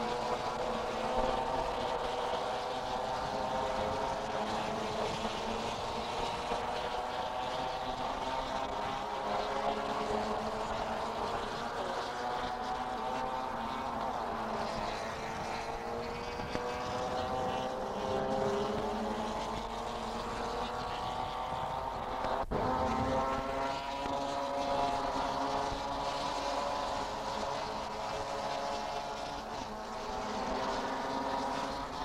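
Racing car engines running on a banked oval track, a continuous drone whose pitch climbs slowly over several seconds at a time and then starts again lower. A single sharp click comes about two-thirds of the way through.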